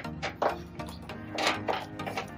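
Soft, fluffy glue-and-borax slime made with shaving foam, squeezed and pressed by hand in a glass dish, giving a few short squelches of trapped air near the start and again about halfway through. Background music plays under it.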